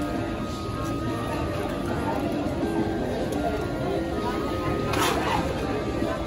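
Background music with held notes playing over the indistinct chatter of a crowd, with a single sharp clatter about five seconds in.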